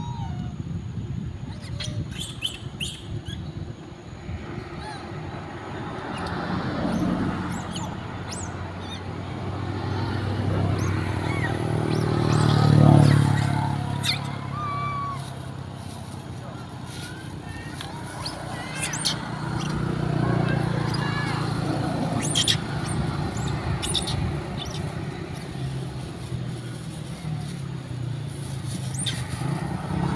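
Engine of a passing motor vehicle, its hum swelling to a peak about a third of the way through, fading, then rising again for a while. A few short high squeaks and light clicks sound over it.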